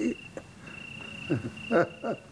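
A cricket's steady, high-pitched trill, a background sound effect in a night scene, with a couple of brief vocal sounds from a man in the second half.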